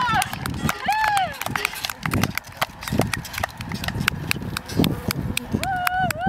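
Rapid, irregular sharp clicks and knocks over a low rumble, with a brief voice-like glide about a second in. Near the end comes a held, wavering voice-like note.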